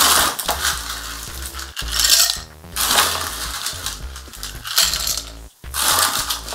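Ice cubes clattering and rattling in an ice bin as ice is dug out, several times over.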